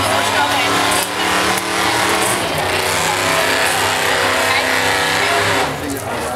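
A motor engine running steadily, with people's voices over it. The engine stops near the end.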